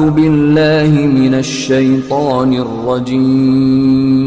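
Intro music: a chanted vocal line that bends up and down in pitch over a steady held drone.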